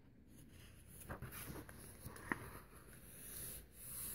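Faint paper rustle of a picture book's page being turned and pressed flat by hand, with a few small clicks and a soft swell of rustling near the end.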